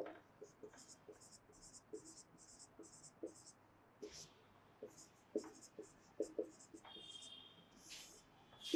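Felt-tip marker writing on a whiteboard: a faint run of short squeaky strokes with light taps as digits are written, and a brief higher squeal near the end.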